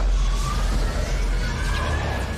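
Sci-fi trailer sound effects: a loud, deep rumble under a faint whine that rises slowly in pitch, accompanying an energy surge striking a space station.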